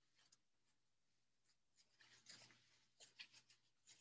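Faint rustling and a few soft clicks from things being handled out of view, mostly in the second half, over near silence.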